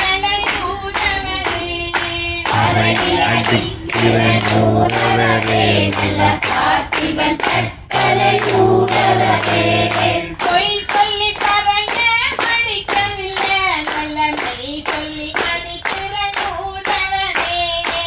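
A group of people singing a chant together, kept in time by steady hand claps a few times a second. Deeper voices join the singing for several seconds in the middle.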